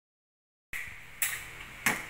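After a moment of silence, two brief, sharp rustles of paper label sheets being handled at a work table, a little over half a second apart, over a steady hiss of room noise.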